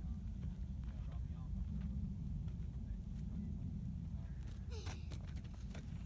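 Wind buffeting the microphone as a steady, uneven low rumble, with faint voices in the background.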